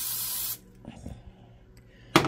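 Aerosol cooking spray hissing steadily into a ceramic coffee mug, cutting off suddenly about half a second in.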